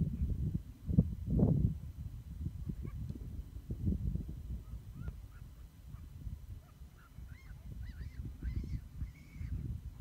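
Low, uneven rumble of wind and handling noise on a handheld camera microphone, with a thump about a second in. In the second half a faint, repeated, arching call sounds several times in a row.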